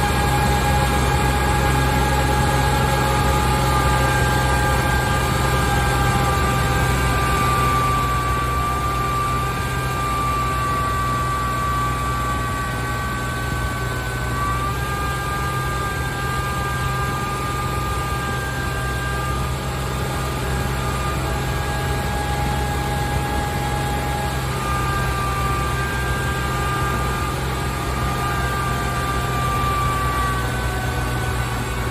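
Kubota L2501 tractor's three-cylinder D1703 diesel engine running steadily under heavy, sustained load as the tractor drives uphill, with a thin steady whine above the engine drone.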